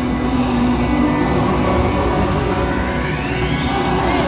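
Dark-ride soundtrack music playing over the low rumble of the moving ride car, with a rising sweep near the end.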